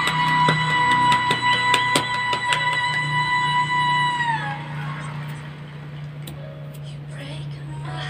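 A woman's voice holding one long high sung note over piano accompaniment, with the audience clapping and cheering across it. The note bends down and stops about four and a half seconds in, leaving quieter crowd noise over a steady low hum.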